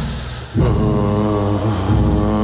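Male lead singer holding one long sung note, coming in about half a second in, over a live rock band with upright bass and drums.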